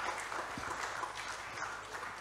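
An audience applauding: many hands clapping at a steady level.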